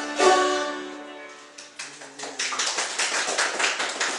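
An acoustic string band with fiddle and plucked strings ends a tune on a final chord that rings and fades over about a second. From about two seconds in, a small audience claps.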